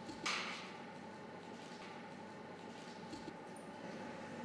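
A short, sharp breath out through the nose about a third of a second in, over a faint steady hum, with a few faint light clicks near the end.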